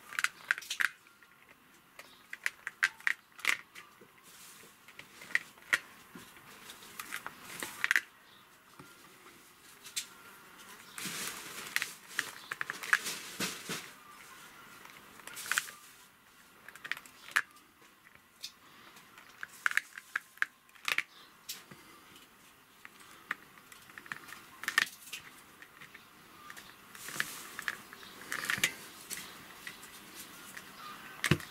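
Toothed metal wire-embedding comb run along the wires of a beehive frame, pressing them into a sheet of beeswax foundation: irregular runs of short clicks and scratchy scrapes, with pauses between strokes.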